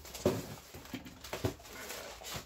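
A cardboard parcel box being handled and tipped, with several short rustles and knocks from the box and the crumpled paper packing inside it.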